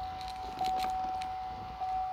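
A Chevrolet Camaro's electronic warning chime sounding a steady, fairly high tone, briefly broken about once a second, right after the ignition is switched on. Faint clicks come in the first second.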